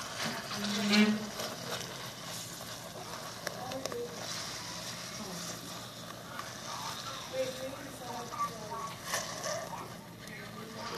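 A styrofoam cup being pressed down into a plastic tub of acetone as it dissolves, with light sloshing of the liquid and a soft hiss and rustle from the foam.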